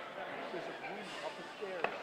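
Indistinct chatter of several people talking at once, with one sharp click near the end.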